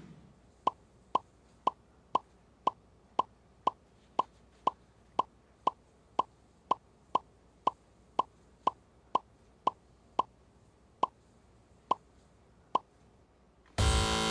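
Quiz-show letter-reveal sound effect: a short pitched ping, about two a second, one for each letter added to the game board, some twenty in a row. The pings come further apart in the last few seconds, and right at the end a contestant's buzzer sounds.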